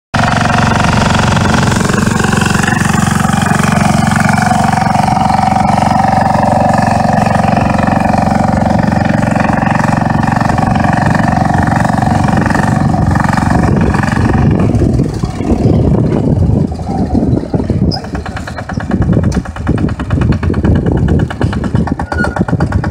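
Engine of a walk-behind two-wheel tractor running under load as it pulls a moldboard plough through the soil. About 15 seconds in the sound turns uneven and choppier, with a rapid pulsing of the engine's firing.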